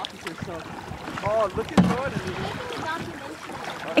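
Kayak paddling on a lake: water sloshing around the paddle and hull, with a sharp knock about two seconds in. Distant voices call out a few times.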